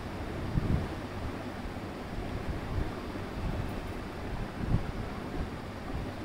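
Steady background noise, an even rushing hiss, with a couple of faint low thumps.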